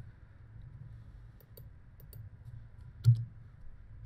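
Computer keyboard clicks: a few faint key taps, then one louder key press about three seconds in, over a low steady hum.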